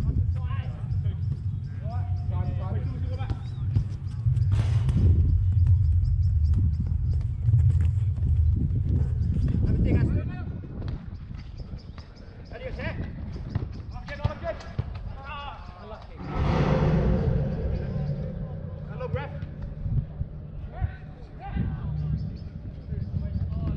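Five-a-side football on an artificial pitch: players calling out to each other and the thud of the ball being kicked, over a steady low rumble. A louder burst of noise comes about two-thirds of the way through.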